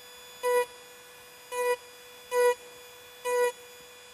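High-speed rotary carving tool texturing feathers in wood. It gives a faint steady whine of one pitch, with four short, louder strokes of the same whine as the bit cuts.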